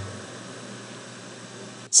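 Steady hiss from a Peavey KB1 keyboard amplifier turned up with no input while it runs off the power station's inverter, mixed with the power station's loud cooling fan. No hum or buzz comes through, the sign of a clean inverter output. A low thump fades out at the very start.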